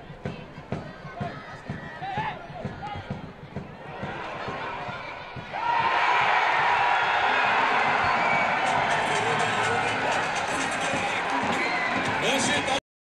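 Football stadium crowd erupting into loud, sustained cheering about halfway through, as at a goal. Before it come scattered shouting voices and knocks from the match.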